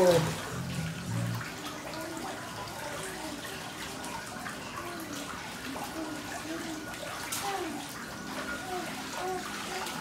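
Whirlpool bathtub jets running, water churning and bubbling steadily, with a faint steady high whine underneath.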